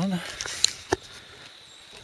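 Two short sharp clicks about a third of a second apart, the second a duller knock, over a steady high-pitched insect drone.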